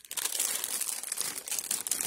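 Plastic food packaging crinkling continuously as groceries are handled and moved about.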